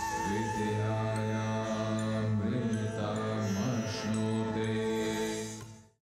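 Closing logo music: a deep, long-held chanted tone over a drone, broken briefly twice, fading out near the end.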